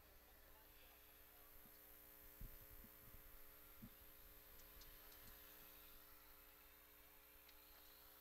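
Near silence: a faint steady electrical hum, with a couple of faint low knocks a few seconds in.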